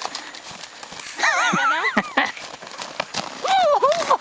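A person's high, wavering vocal cries, twice: a little over a second in and again near the end, over irregular crunching steps of snowshoes in snow.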